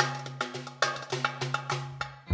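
Instrumental Arabic music: hand drums play an uneven rhythm of sharp, ringing strokes, several a second, over a low held tone. The strokes grow quieter toward the end.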